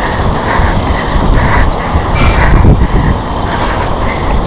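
Rhythmic clicking and rattling, about three a second in time with a running stride, from a camera being jostled as its carrier runs. Under it runs a heavy low rumble.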